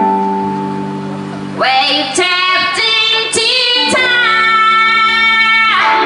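A woman singing live with a band in a slow song. A held chord rings for about a second and a half, then she sings a line that ends on a long held note, cut off just before the end.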